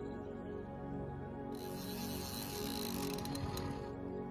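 Background music throughout. About a second and a half in, a spinning reel's drag buzzes for about two seconds as a hooked carp pulls line off the spool, with a few clicks near the end, then stops abruptly.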